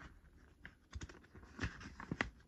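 Faint handling of plastic DVD cases: a handful of short clicks and taps as cases are moved and set down on a stack, the loudest about one and a half seconds in.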